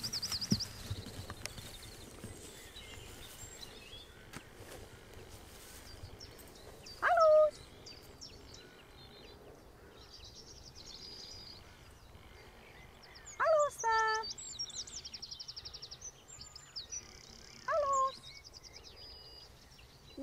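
Birds singing and trilling in open countryside, with three louder short pitched calls about seven, fourteen and eighteen seconds in; the middle one is longer and wavering.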